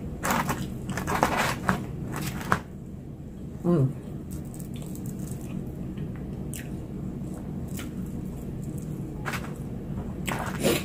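Close-up biting and chewing of crispy battered, deep-fried food: a quick run of loud crunches over the first two and a half seconds, then softer chewing with scattered crackles and a few more crunches near the end. About three and a half seconds in, a short low hum from the eater, falling in pitch.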